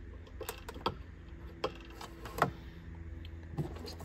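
Handling noise of wiring being hooked up: several small sharp clicks and rattles as a spade connector is fitted to a jump-pack clamp and the wires and a switch box are picked up, over a low steady hum.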